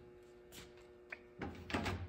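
Signs being handled on a wooden table: a soft slide about half a second in, a small click, then a longer sliding shuffle near the end as one sign is set down and the next picked up.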